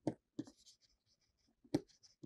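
A stylus writing on a tablet: faint scratching strokes with a few light taps, one near the start, one near half a second in and a sharper one near the end.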